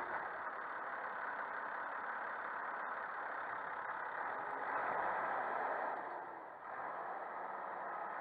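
New Holland TS115 tractor's turbocharged diesel engine running steadily as the tractor pulls a plough past at close range, heard as an even, muffled drone that dips briefly near the end.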